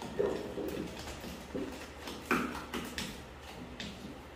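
Wooden spoon stirring thick cookie dough in a ceramic mixing bowl: irregular scrapes and knocks of the spoon against the bowl, with two louder knocks, one just after the start and one a little past halfway.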